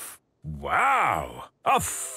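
A wordless low voice in a cartoon: one drawn-out call of about a second, its pitch rising then falling.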